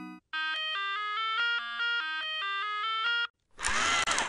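Outro jingle: a quick, bright melody of short, chime-like electronic notes that stops about three seconds in, followed near the end by a brief noisy sound-effect sting.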